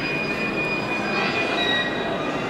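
A steady, thin, high-pitched whine over the constant hubbub of a large hall. The whine drops to a slightly lower pitch near the end.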